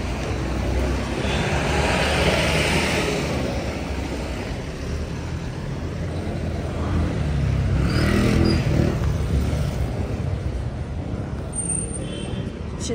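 Street traffic: cars passing close by over a steady low rumble, with two louder swells as vehicles go past, about two seconds in and about eight seconds in.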